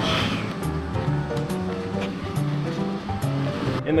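Background music with held notes that change step by step, over a steady rushing noise.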